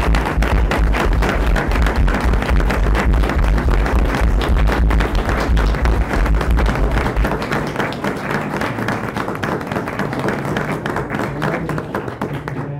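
Audience applause: many hands clapping, thinning and getting quieter toward the end. A low rumble underneath stops about seven seconds in.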